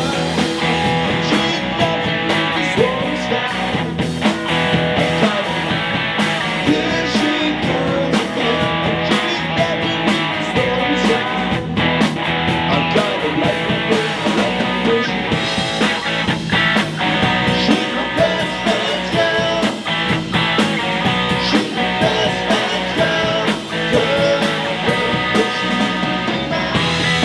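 Live rock band playing: electric guitar, bass guitar and a Ludwig drum kit, at a steady, continuous level.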